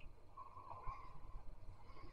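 A faint sip and swallow of light beer from a glass, over quiet room tone.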